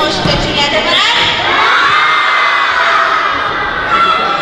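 A crowd of children shouting and cheering together, swelling about a second in.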